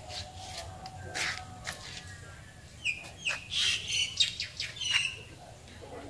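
Small birds chirping: a scatter of short, high calls, busiest from about three to five seconds in.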